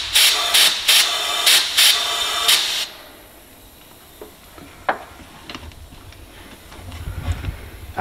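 Compressed air hissing in quick repeated bursts, about two or three a second, as a boost leak tester pressurises a turbo car's intake and intercooler pipework to about 10 PSI. The hiss cuts off suddenly about three seconds in, leaving a few faint clicks and a low rumble.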